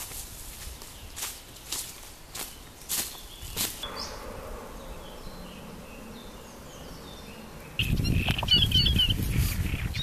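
Footsteps on dry forest leaf litter, about two a second, for the first four seconds. After that, faint birdsong; near the end a sudden low rumble comes in under louder bird chirps.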